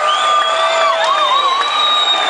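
Rock concert crowd cheering and screaming, with several long high-pitched yells over the crowd noise; no drums or bass, so the band is between songs.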